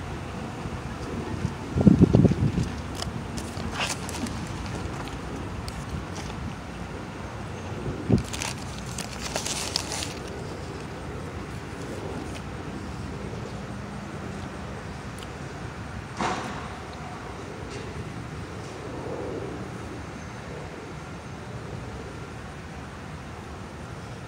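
Steady outdoor background noise with a few handling sounds: a loud low bump about two seconds in, scattered clicks, and a brief crinkle of a paper burger wrapper about nine seconds in as a burger is picked up and eaten.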